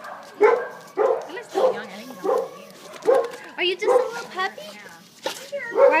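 Dog barking repeatedly in a shelter kennel, about one or two short barks a second.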